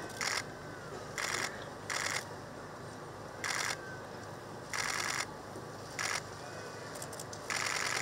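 Press cameras firing shutter bursts: about seven short volleys of rapid clicks, spaced irregularly about a second apart, over a faint steady background.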